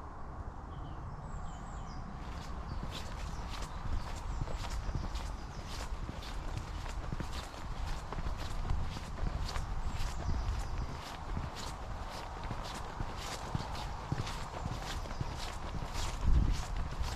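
Footsteps of a walker on a dry dirt footpath, an even pace of about two steps a second that starts a couple of seconds in, over a steady low rumble.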